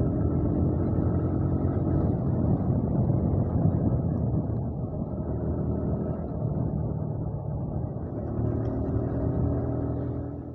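Motorcycle engine running at steady road speed, with heavy wind rush on the microphone.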